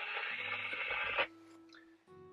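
Steady static hiss from a Standard Horizon HX890 handheld VHF marine radio, cutting off abruptly a little over a second in.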